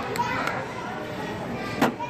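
Children's voices and indistinct chatter in a busy store, with a single sharp knock near the end.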